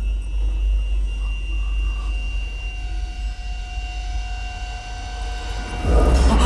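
Horror-film soundtrack drone: a steady low rumble with a few faint sustained high tones over it, easing off slightly before swelling suddenly louder right at the end.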